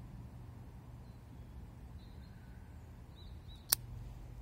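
Quiet outdoor background with a low steady hum and a few faint high bird chirps, then a single sharp click near the end from the pocket lighter used to light a tobacco pipe.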